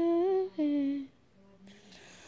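A girl humming two held notes, the second a little lower and sliding down, in the first second, then a pause.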